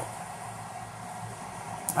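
Steady fan noise, an even hiss with nothing else happening.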